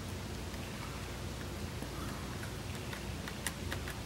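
Faint handling noise from fingers working the small plastic parts and point rails of an HO scale model railroad turnout, with a few light clicks near the end, over a steady low room hum.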